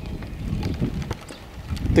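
Wind buffeting the microphone in a low, uneven rumble, with rain falling outside.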